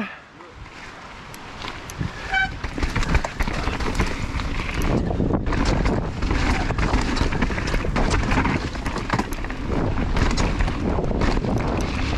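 Mountain bike riding fast down a dirt trail. Tyres roll on dirt, the bike makes many quick rattles and knocks over the rough ground, and wind rushes over the helmet camera's microphone. The sound builds from about two seconds in as the bike picks up speed.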